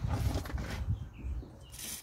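A short hiss of WD-40 aerosol spraying through its straw onto the O-rings of a fuel pressure regulator, near the end. Low rumbling handling noise on the microphone runs throughout.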